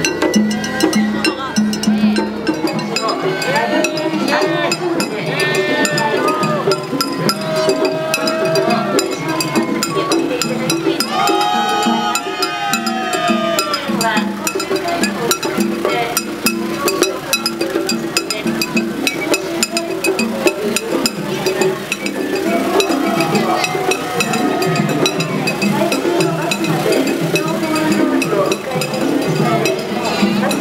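Festival float music (hayashi): drums and clacking percussion keep a steady, dense beat under a wandering melody line, mixed with crowd voices.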